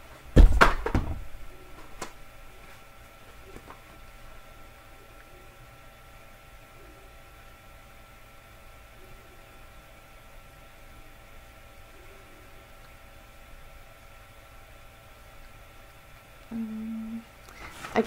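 A single loud thump about half a second in, then quiet room tone with a faint steady electrical hum and a few small movement noises; a short low hum-like tone sounds near the end.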